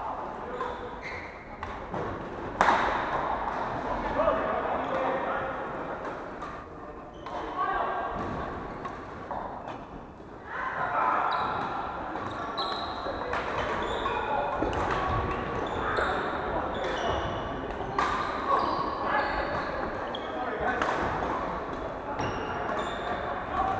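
Badminton rally in a large indoor hall: sharp racket hits on the shuttlecock, the loudest about two and a half seconds in, with short high squeaks of court shoes on the wooden floor and indistinct voices throughout.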